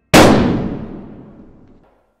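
A single loud gunshot, its echo dying away over nearly two seconds before cutting off.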